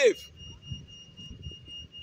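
A man's voice finishes a word just at the start, then a pause filled with low street background noise and a faint, steady high-pitched whine that does not change.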